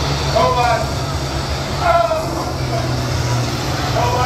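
Large combine diesel engines running steadily, a constant low drone, with brief indistinct voices over it about half a second in and again about two seconds in.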